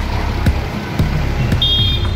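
Background music with a steady beat of about two beats a second.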